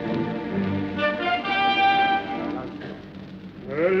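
Opera orchestra playing held chords between sung lines, fuller about a second in and dropping quieter about three seconds in. A baritone voice starts singing near the end.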